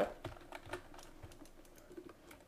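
Faint, irregular clicking of a computer keyboard and mouse, several separate clicks.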